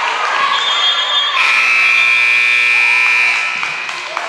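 Gymnasium scoreboard horn sounding one steady buzz about two seconds long, starting about a second and a half in, over court noise and voices.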